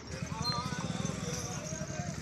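An engine running at idle with a rapid, even pulsing beat, with voices in the background.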